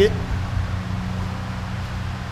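A steady low mechanical hum with a light hiss.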